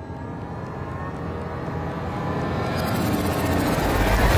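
Intro sting music for a channel logo: sustained tones that swell steadily louder, with a rushing whoosh building over the last second toward a hit.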